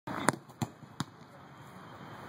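A football struck by a player's foot on grass three times, each a sharp thud, about a third of a second apart, as he dribbles and plays the ball on.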